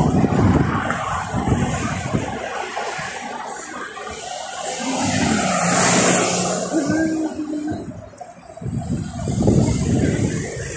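Road traffic: cars passing on a multi-lane road, one swelling up and fading away around the middle, with wind rumbling on the phone microphone.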